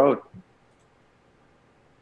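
A man's spoken word trailing off, then near silence of a video-call line with one faint short tick just after the word.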